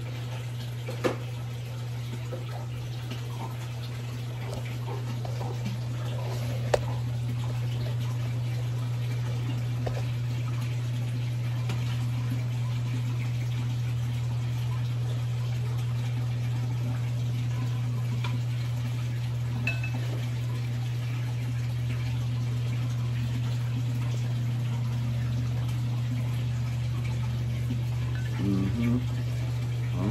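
Aquarium water system running: a steady low hum with water trickling and splashing into the tank. A few sharp clicks come in the first seven seconds.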